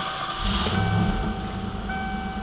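A 1988 Ford Mustang GT's 5.0-liter V8 starts about half a second in and settles into a steady idle. A steady electronic warning tone from the dashboard sounds along with it.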